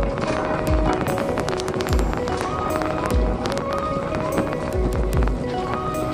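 Background music: an instrumental beat with deep kick-drum hits, crisp ticks on top and a short repeating melody.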